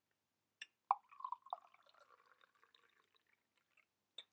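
Tea poured from a ceramic teapot into a ceramic mug: a light clink or two about a second in, then a short, quiet stream of liquid that trickles and dwindles away.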